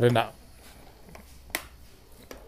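A green plastic electric kettle handled on its power base: one sharp click about a second and a half in, with a few faint taps.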